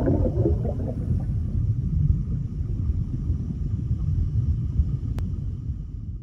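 Low underwater rumble sound effect with bubbling in the first second, settling into a steady deep rumble that starts to fade at the very end.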